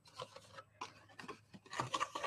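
Faint rustling and rubbing of card stock as fingers fold the flaps of a paper gift box down and press them closed, in short scattered scrapes with a few light ticks.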